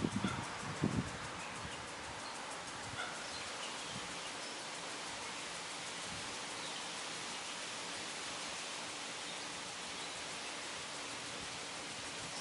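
Steady outdoor background hiss with a few faint, short high chirps scattered through it, and some low bumps in the first second.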